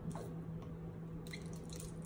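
A steady low hum with a few faint, soft clicks about a second in and again near the end.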